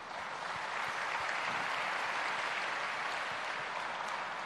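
Audience applauding, an even spread of many hands clapping that builds up in the first second and eases slightly near the end.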